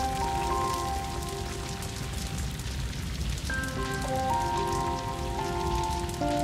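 Wildfire burning: a dense, steady crackle of burning wood under held music chords that shift to a new chord about three and a half seconds in.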